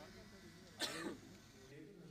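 A person gives one short cough, clearing the throat, about a second in, over a faint murmur of voices.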